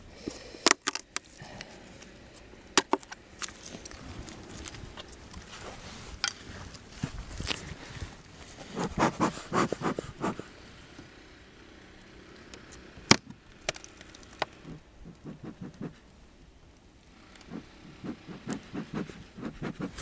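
Scattered clicks, taps and scrapes of a metal hive tool working on a wooden beehive, then a quick run of puffs from a bellows bee smoker about nine seconds in, followed by more light knocks of handling.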